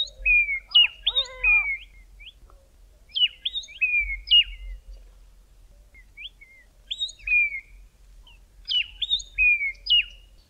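Southern grey tits singing: repeated phrases of a sharp rising note followed by a slurred, falling whistle, in groups about every two seconds. A lower call overlaps the first phrase about a second in.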